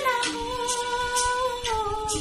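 A woman singing a Hindi song over a backing track, her voice holding long notes that step slowly downward, with a light percussion beat about twice a second.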